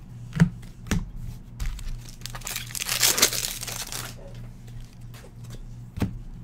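Trading-card pack wrapper crinkling and tearing for about two seconds in the middle, after two light knocks early on. A steady low hum runs underneath.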